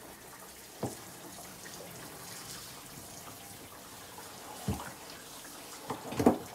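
Tap water from a hose pipe pouring into a 230-litre blue plastic barrel, a steady rushing hiss. Two brief knocks come through it, one about a second in and one near the end.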